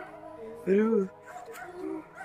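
Short pitched cries, the loudest one about a second in, rising and falling in pitch.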